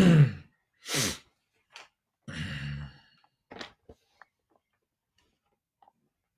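A man's sigh, falling in pitch, then a breathy exhale and a short low hum in the throat, followed by a few small clicks.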